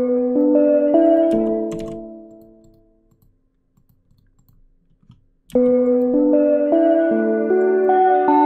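Omnisphere software synth playing its "synth – reverb accent" patch: a short phrase of sustained notes that rings out and fades over about two seconds. After a few seconds of quiet, another moving phrase of notes starts about five and a half seconds in.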